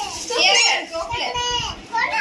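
Speech only: a young child talking in a high voice.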